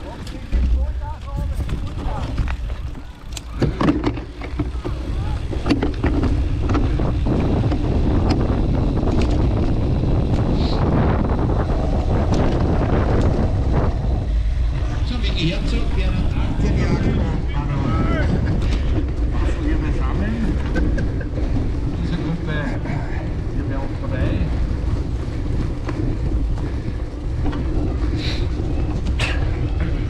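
Wind buffeting an action camera's microphone as a cyclocross bike rides over a grass course. It gets louder and steadier about six seconds in as the bike picks up speed, after a few knocks from the bike in the first seconds. Shouted voices come in now and then.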